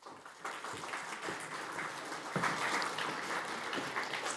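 Audience applauding, the clapping building up over the first half second and a little louder about halfway through.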